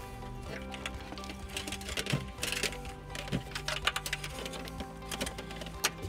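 Background music, with scattered small clicks and rustles of a trailer wiring harness being handled and fed behind plastic trim panels.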